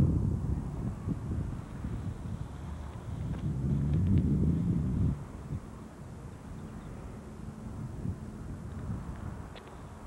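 Wind buffeting the microphone: a rough low rumble, stronger in the first half and easing off after about five seconds.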